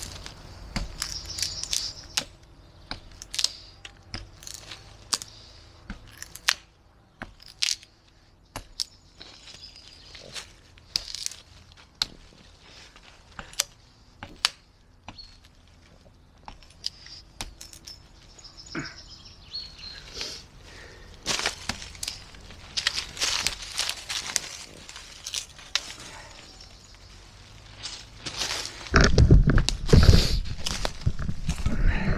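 Fiskars utility knife's thin steel blade stuck into a log and levered against the wood: a string of sharp cracks and clicks of wood and blade, with a longer spell of crunching about two-thirds of the way in. It is a blade-stability test that leaves the tip slightly bent.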